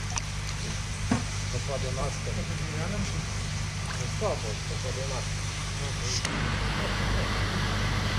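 Steady low hum of a motor running, with faint voices in the background.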